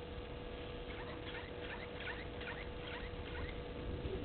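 Egyptian goose goslings giving a run of about nine short, high peeps, roughly three a second, starting about a second in.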